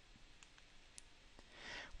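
Near silence with a few faint clicks spread through it and a soft intake of breath near the end.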